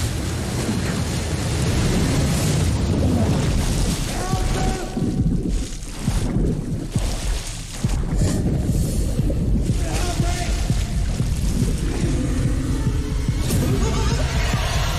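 Horror film trailer soundtrack played back: dark music over deep booms and a heavy low rumble, with a couple of brief drops in loudness partway through.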